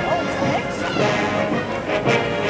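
Massed brass bands playing a march on the move, sustained brass chords with sharp percussion strokes cutting through.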